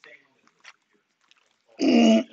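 Quiet classroom with a few faint rustles and ticks, then a person's voice starts loudly near the end.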